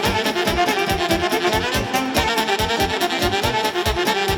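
A section of saxophones playing a lively dance-tune melody together over a quick, steady drum and bass beat: a Romanian Bihor-style folk instrumental.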